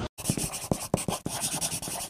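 Felt-tip marker scratching across paper in quick, irregular strokes, a handwriting sound effect, starting just after a brief silence.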